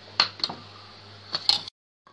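A metal spoon clicking against the rim and side of a pot of simmering strawberry jam as it is stirred: four sharp taps, two close together near the start and two near the end, then the sound cuts off abruptly.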